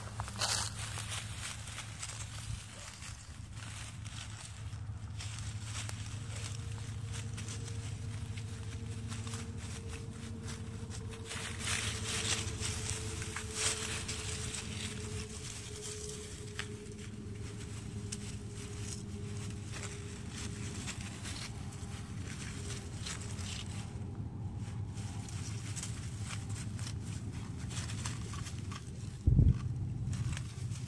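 Footsteps and rustling in tall dry grass, over a steady low hum, with a faint drawn-out tone through the middle. A single sharp thump comes just before the end.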